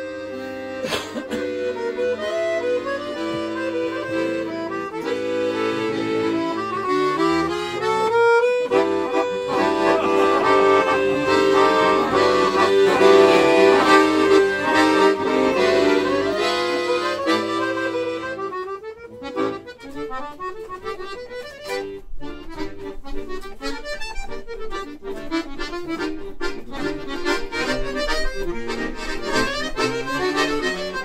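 Two chromatic accordions playing a duet: held chords that swell to their loudest about halfway through, then, about two-thirds in, give way to quieter, short detached notes.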